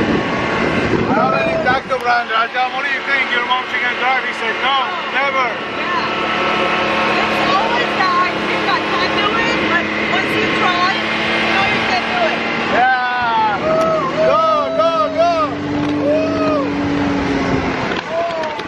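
Side-by-side UTV engine running as it drives along a road, with wordless voices, like whoops or sing-song calls, riding over the engine noise.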